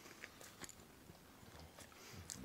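Near silence with a few faint clicks: a Rhodesian ridgeback licking and chewing treat crumbs from a small bowl.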